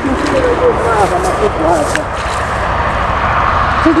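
A steady low rumble and hiss, with short, broken voice sounds from a man and a single faint click about two seconds in.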